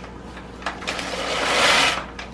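A plastic bag of dry pasta crinkling in the hands, then torn open with a rasping tear that grows louder for about a second and stops abruptly near the end.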